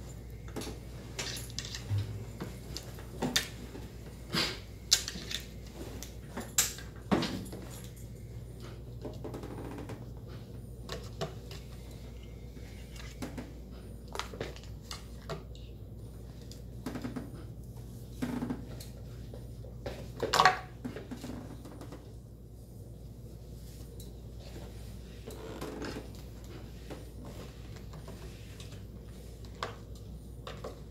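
Scattered clicks and knocks of small hard objects being handled and set down on a wooden desk, a smartphone and its stand among them, over a steady low hum. The knocks come often in the first few seconds, with a louder one about two-thirds of the way in.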